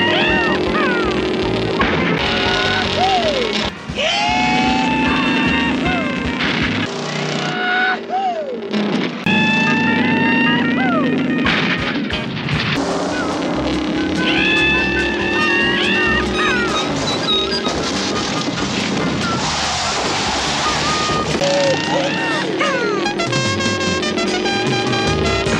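TV chase soundtrack: music mixed with car engine and skid sounds, broken by abrupt cuts every few seconds.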